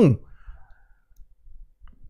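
A man's emphatic spoken phrase cuts off just after the start, followed by a pause of well under two seconds with only faint background noise and a few small clicks just before he speaks again.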